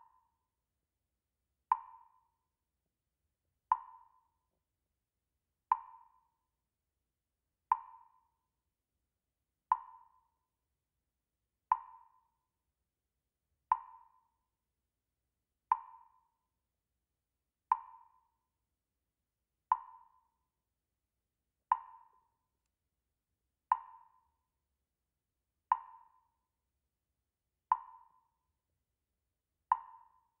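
A short, hollow wood-block-like tick with a brief pitched ring, repeating evenly once every two seconds, like a slow metronome.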